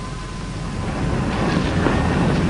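Steady hiss, crackle and low rumble of an early-1930s optical film soundtrack, with no distinct sound event; it grows slightly louder about a second in.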